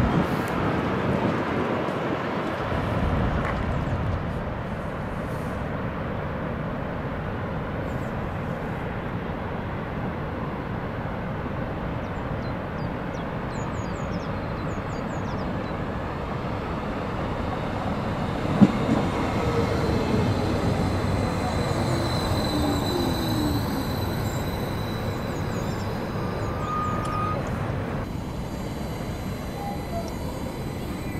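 Regional electric multiple unit approaching and passing on a tight curve, its wheels squealing on the curve in the last third, over a steady rushing of the nearby waterfall. A single sharp click stands out about two-thirds of the way through.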